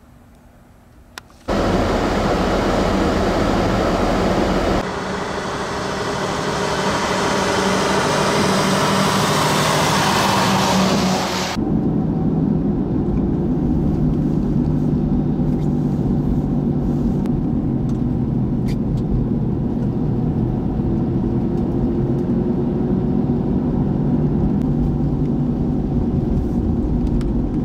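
Snow plow truck's engine running steadily with rushing road noise from tyres on wet, slushy pavement, starting abruptly after a quiet first second and a half.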